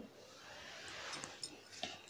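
Faint sizzle of chopped onions dropping into hot oil in a nonstick pan, rising and fading over about a second and a half, with a couple of light clicks near the end.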